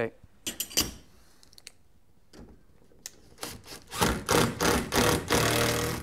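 Cordless impact driver driving screws through a steel garage-door hinge: a few short runs starting about three and a half seconds in, then a longer, steady run near the end. A few light metallic clicks of the hinge being handled come about half a second in.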